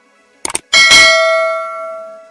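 Subscribe-button sound effect: a quick double click about half a second in, then a bright notification-bell ding that rings on and slowly fades.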